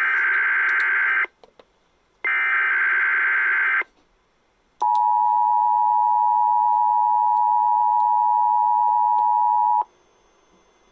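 Emergency Alert System Required Weekly Test coming through a radio. Two raspy, screeching digital header bursts play, about a second apart. After a pause, the steady two-note EAS attention tone (853 and 960 Hz) sounds for about five seconds and then cuts off.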